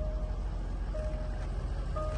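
Steady low rumble of an idling vehicle engine, heard inside a car cabin, with a short electronic warning beep sounding about once a second.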